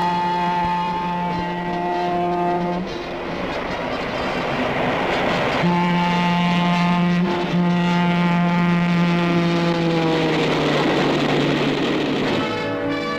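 Locomotive air horn sounding a chord in two long blasts, the first about three seconds, the second from about halfway in to the end. A rushing noise of the passing train fills the gap between them, and the horn's pitch drops near the end as the train goes by.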